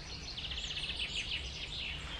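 A small songbird singing: a fast trill of evenly spaced high notes, then a few notes sliding down in pitch near the end.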